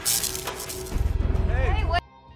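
Built-in coffee machine running: a hiss, then a low, fast buzzing from about a second in, stopping abruptly as the power is cut. A voice is heard briefly near the end.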